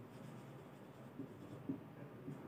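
Faint sound of a marker pen writing on a whiteboard, with a few soft strokes.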